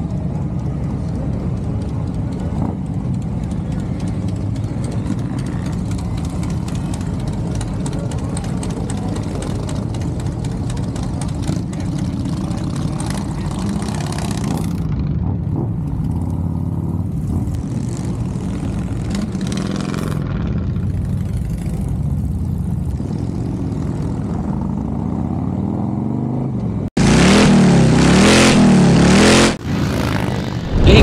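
Harley-Davidson V-twin motorcycle engine running steadily at low speed, a low rumble. About 27 seconds in it cuts off abruptly into a much louder sound.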